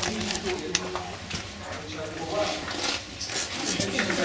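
Indistinct low voices and scattered scuffs and clicks of footsteps on a stone floor, in a small stone chamber.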